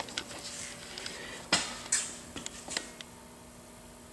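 Light metallic clicks and clinks of hand tools being handled, a handful of them in the first three seconds, the sharpest about halfway through, over a faint steady hum.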